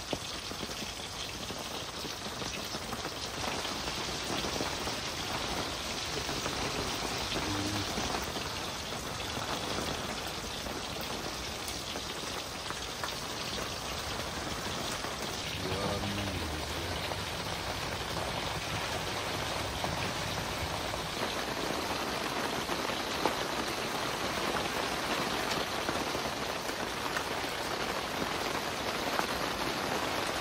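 Steady heavy rain falling on the fabric of an inflatable tent, heard from inside the tent.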